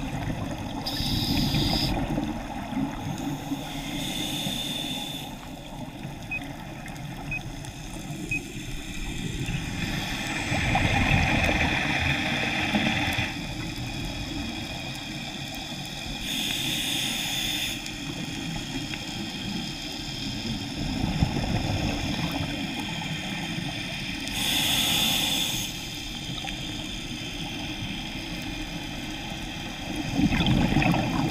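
Scuba diver breathing through a regulator underwater: rushing breaths and bubbling exhalations come every several seconds, one longer about ten seconds in, over a steady low rumble of water around the camera.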